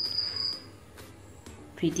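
A steady, thin high-pitched tone that stops under a second in, followed by quiet room tone.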